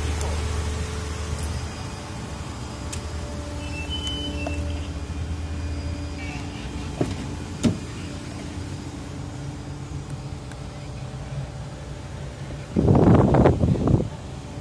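Car engine idling with a steady low hum. A couple of sharp clicks come about seven seconds in as the driver's door is worked open, and a loud rustling burst comes near the end.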